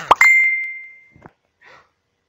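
A quick falling swoop, then a single bright chime: one high ringing tone that fades away over about a second.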